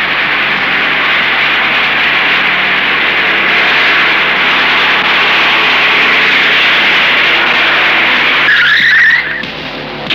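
Cars driving in fast, a steady rush of engine and tyre noise, ending near the end with a brief wavering tyre squeal as they brake to a stop.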